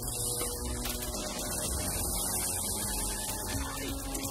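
Low, steady droning hum of a synthesizer score, its sustained tones shifting pitch about a second in and again near the end.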